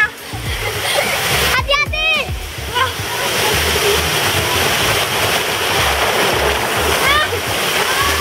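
Water rushing down a water slide under several children sliding together, a steady loud rush, with high-pitched children's squeals about two seconds in and again near the end.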